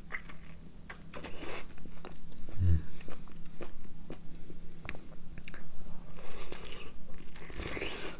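A man biting into a ripe nectarine and chewing it, with wet bites and a run of short mouth clicks.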